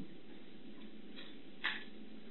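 Steady low background hiss and hum of a quiet room, with one short click a little over one and a half seconds in.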